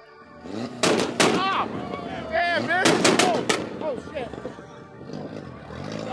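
About five sharp, loud bangs in two quick groups, typical of a car's exhaust popping and backfiring at a meet, with people shouting and whooping around them.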